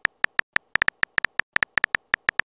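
Phone keyboard typing sound effect from a texting-story animation: a short, high tick for each letter typed, about eight a second at an uneven pace.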